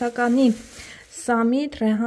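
A person's voice speaking in short phrases, with a pause of under a second in the middle.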